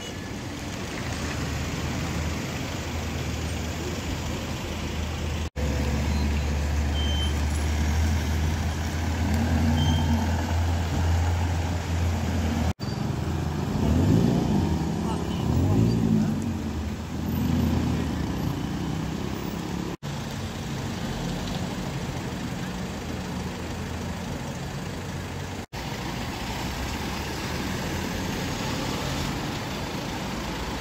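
Street sound with a vehicle engine idling in a low, steady hum and people's voices talking, loudest in the middle. The sound drops out briefly several times where shots are cut together.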